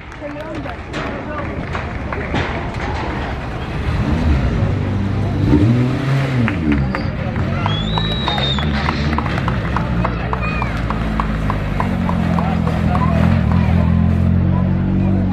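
Citroën C3 Rally2 rally car's 1.6-litre turbocharged four-cylinder engine, revved briefly about five seconds in, then running as the car pulls away, growing louder near the end. Crowd voices and a rapid series of light clicks are heard behind it.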